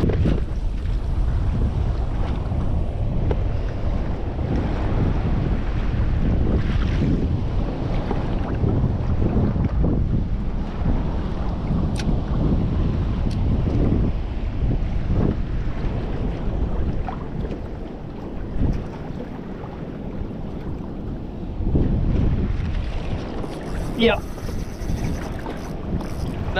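Wind rumbling across the microphone, with small waves slapping against the kayak's hull. A short, sharper sound comes near the end.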